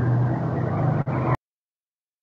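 A steady low, buzzy hum coming through a voice-chat microphone, with a faint click about a second in. The hum cuts off abruptly about halfway through, leaving dead silence.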